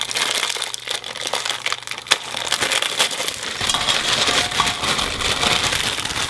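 Crinkling and rustling of a crumpled white wrapper-like item handled close to the microphone, a continuous crackle of many small sharp ticks.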